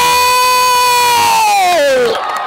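A man's long, drawn-out shout held on one high note for about two seconds, sliding down in pitch near the end: the commentator's stretched-out goal call.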